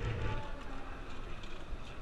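Gashapon capsule-toy machine being worked by hand, its crank turned for another capsule, with a dull low thump right at the start over steady background noise.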